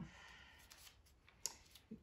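Near silence broken by a single light, sharp click about a second and a half in as a small paper picture card is picked up and flipped over.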